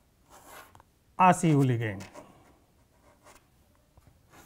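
Chalk drawing a line on a chalkboard: one short stroke near the start, with faint taps of the chalk afterwards. About a second in, a man's voice draws out a single "aa" that falls in pitch.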